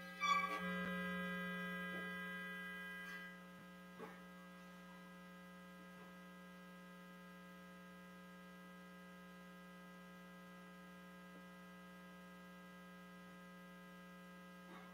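Steady electrical mains hum with a buzzy stack of overtones. In the first three seconds a louder, brighter buzzing tone comes in suddenly, fades, and cuts off. A few faint clicks follow.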